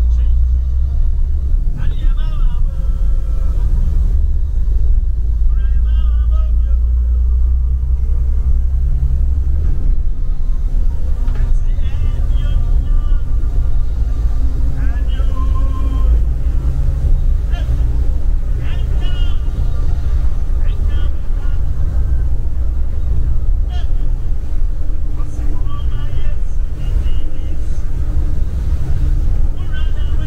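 Bus engine and tyres giving a deep, steady rumble inside the cabin, with people's voices talking on and off over it.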